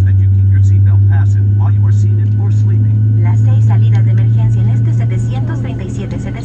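Steady low drone inside the cabin of a Boeing 737-700 taxiing, easing slightly near the end, with a voice over the cabin PA above it.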